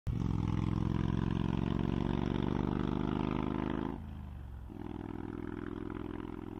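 Motorbike engine running steadily, then dropping in pitch and level about four seconds in as it slows, settling to a quieter idle.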